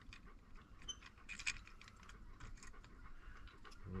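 Faint, scattered light clicks and clinks of small metal hardware being handled: carriage bolts, washers and knobs for the seat brackets, a few more of them about a second and a half in.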